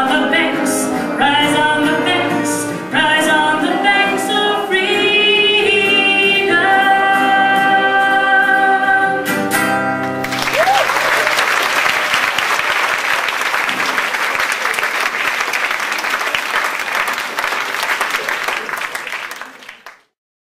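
A woman sings the closing line of a folk song over her strummed acoustic guitar, holding a long final note and ending on a last strum about halfway through. The audience then applauds until the sound fades out at the very end.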